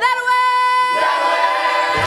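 Musical theatre cast singing the close of a number: a single voice holds one long steady note, and about a second in the chorus joins on a sustained chord, with no orchestra bass underneath.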